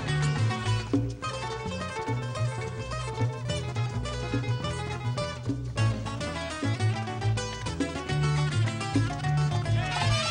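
Cuban son band playing an instrumental break: a Cuban tres plays quick runs of plucked notes over a steady, repeating bass line.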